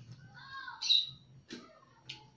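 A bird chirping: a short arching call followed by a loud, sharp high chirp about a second in. A single sharp click follows a moment later.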